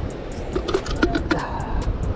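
Handling noises at a plastic bait bucket: several short clicks and knocks from the lid and bucket as a small whiting is dropped in, over a steady low rumble of wind or surf.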